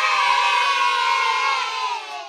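A group of children cheering together in one long held cheer of many voices, fading out near the end.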